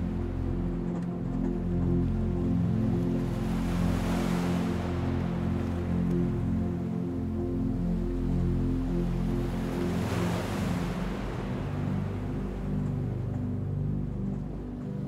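Calm ambient background music of sustained low chords, with ocean surf washing in under it, swelling about four seconds in and again about ten seconds in.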